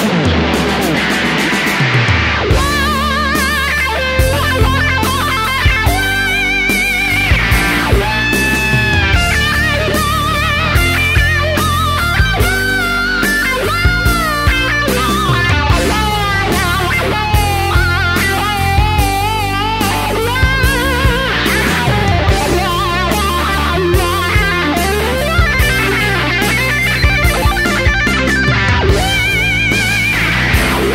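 Electric guitar solo on a Fender Stratocaster: sustained single notes with string bends and wide vibrato, over a slow rock backing of bass and drums.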